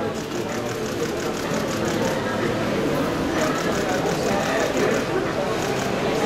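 Overlapping chatter of a room full of people, with two runs of rapid camera shutter clicks, about five a second, in the first half.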